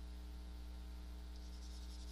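A pen stylus scratching across a tablet screen, erasing handwritten ink, which starts about one and a half seconds in. A steady low electrical mains hum is there the whole time and is the loudest thing.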